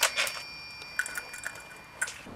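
Small metallic clicks and scrapes as a handlebar-mounted bicycle bell is handled and worked off its clamp, over a thin high ring from the bell that hangs on until near the end.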